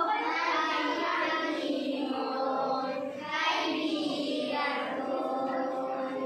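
A group of children singing a song together.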